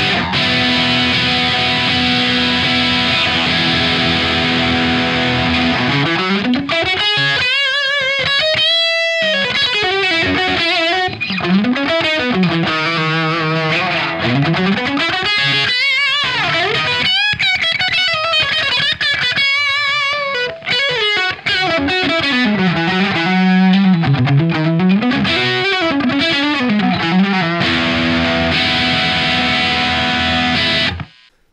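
Electric guitar, a Gibson SG with humbuckers, played through a Vox AC15C1 combo amp cranked with its volume, bass, treble, Top Boost and Normal controls at 10, boosted by a Sick As pedal, giving a loud, heavily distorted tone. A held chord rings for about six seconds, then a lead line follows with wide vibrato and string bends, ending on another sustained chord.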